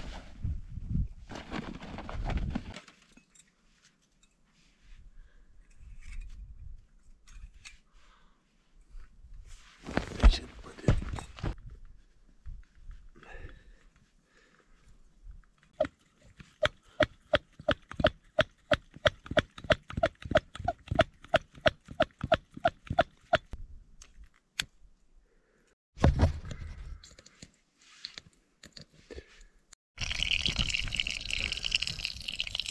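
Plunger pump on a red liquid-fuel bottle being worked in quick, even strokes, about three to four a second, each with a squeak, pressurising the petrol for a camping stove. Before it come bursts of handling clatter, the loudest a knock about ten seconds in.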